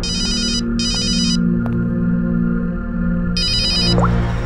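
A telephone ringing with an electronic warbling trill: two short rings close together in the first second and a half, then another ring starting near the end. Low, sustained background music plays under it.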